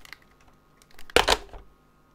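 A short clatter of a telephone handset being handled and set down on the desk, a little over a second in; the rest is quiet room tone.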